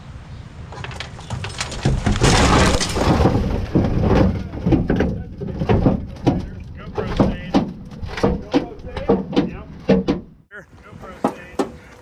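The stripped, rusted body shell of a 1983 Toyota Tercel wagon being rolled over onto its side by hand: a rushing scrape about two seconds in, then a string of knocks and clunks from the sheet-metal body until about ten seconds in.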